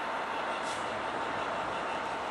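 GBRf Class 66 diesel locomotive 66714, its two-stroke EMD V12 engine running steadily as it hauls a loaded scrap train slowly past. A brief high hiss comes under a second in.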